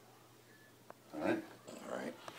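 A dog vocalizing briefly about a second in, after a small click, with a second, weaker sound near the end.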